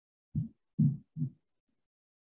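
Three short, low, dull thumps, about half a second apart, the middle one the loudest.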